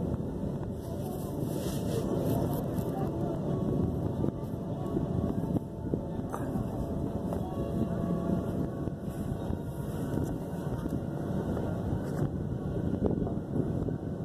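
Electric inflation blower running steadily as it fills an inflatable movie screen, a continuous low rushing noise mixed with wind on the microphone.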